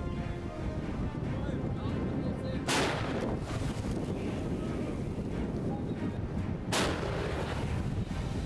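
Self-propelled howitzer firing: two loud shots about four seconds apart, each followed by a brief rumbling tail, over steady wind noise on the microphone.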